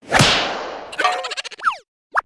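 Cartoon slapstick sound effects: a sudden loud whip-like crack that fades away over about a second, followed by a quick clatter of small clicks and a short falling glide.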